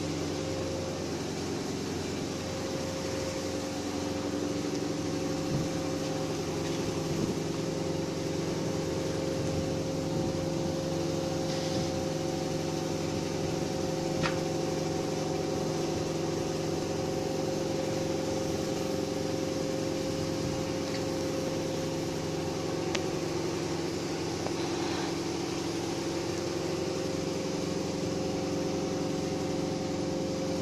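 Weaving loom machinery running steadily, a continuous mechanical hum with several steady tones and a few faint clicks.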